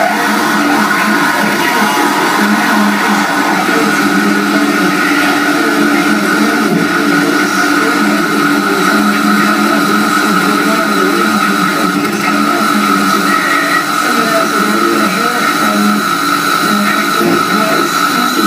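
Loud live noise music from a table of effects pedals and electronics: a dense, unbroken wall of harsh noise with several steady tones held through it.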